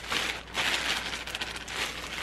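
Clear plastic polybag crinkling as a packaged bra is handled, an irregular run of small crackles throughout.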